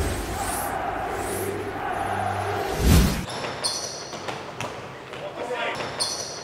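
A short logo sting of sustained synth tones and swishes ends in a low boom about three seconds in. Then basketballs bounce on a hardwood court in a large, echoing arena, in irregular thuds.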